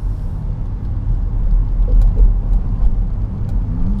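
Steady low road rumble inside a car's cabin at freeway speed, from the tyres and engine, with a few faint ticks.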